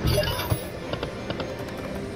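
Iron Man-themed video slot machine playing its electronic game music and spin sound effects, with a short loud burst of effects at the start and a sharp thump about half a second in.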